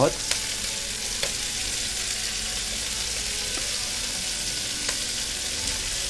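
Shrimp, onion and carrot frying in hot oil in a pan: a steady sizzle, with a few light clicks.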